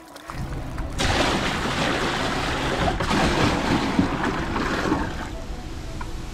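Shallow saltwater surf washing and splashing around a cast net as a catch of finger mullet is shaken out and released, a steady rush that eases a little near the end.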